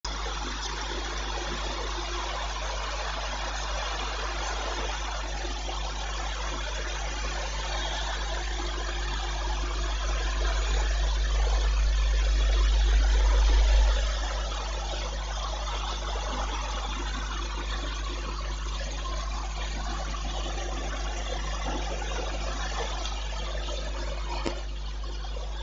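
Steady hiss-like background noise with a low electrical hum from an open microphone and sound system. The low hum swells from about eight seconds in and drops off suddenly around fourteen seconds.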